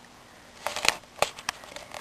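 Handling noise: a few light clicks and rustles, about four sharp clicks in the middle of a quiet pause.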